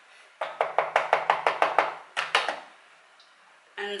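Quick knocking on the base of an upturned white bowl sitting on a plastic meal-prep tub, to free a packed mould of soft rice: about nine rapid taps in a little over a second, then two more after a short pause.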